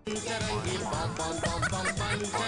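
Comedy-show title theme music starting suddenly, a quick run of short, bending pitched notes, some of them cackling or gobbling, over a steady bass.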